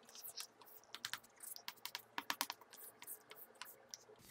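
Chalk on a chalkboard: a faint, irregular run of light taps and short scrapes as lines and letters are drawn.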